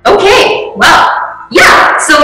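A person's voice, loud and exclaiming, in three short bursts in a row.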